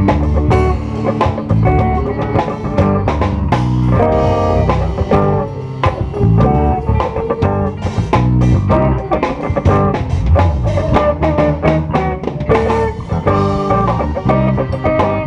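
A live band of electric bass, drums, electric guitar and keyboard playing a gospel worship song at full volume, with a steady drum beat and a prominent bass line. The recording comes through a video camera's microphone, which flattens the sound.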